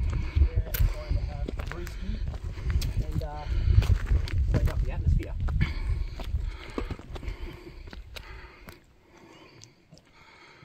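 Wind buffeting the microphone in uneven gusts, with faint voices behind it; the buffeting dies away near the end.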